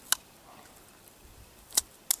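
Two short, sharp clicks about a second and a half apart, from hands handling a Glock 17 pistol wrapped in condom rubbers.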